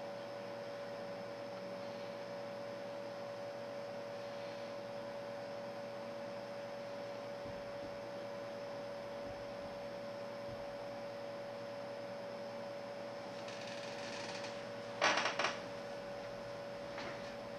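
A steady hum with one constant mid-pitched tone over a faint hiss. Two short, louder sounds come close together about a second before the end.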